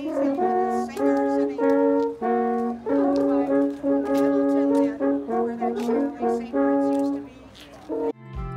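Two wooden alphorns played together, a slow melody of sustained horn notes that changes pitch every half second or so and fades out about seven seconds in.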